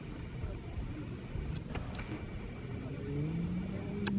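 A low, steady outdoor rumble, joined about three seconds in by an engine hum that rises in pitch and then holds steady.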